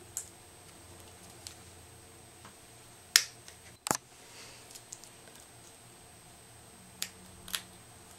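Scissors snipping adhesive sequin trim, with small clicks of handling, a few separate sharp clicks spread out, the loudest a little after three seconds in.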